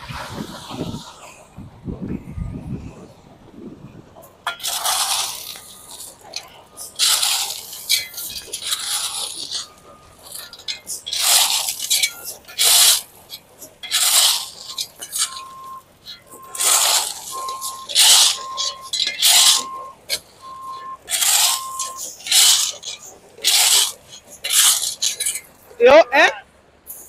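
A shovel scraping and scooping loose gravel in a steady run of strokes, about one a second, starting a few seconds in.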